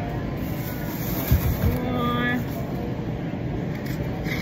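Steady low rumble of supermarket background noise, with a single thump a little over a second in and a brief voice about two seconds in.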